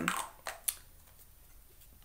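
A woman's drawn-out "um" fades out. About half a second later come two brief, sharp clicks, then quiet room tone.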